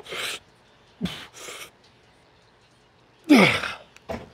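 A man's hard breathing under effort during a heavy set of cable triceps pushdowns: short sharp breaths, and two voiced exhales that fall in pitch, about a second in and a louder one just past three seconds.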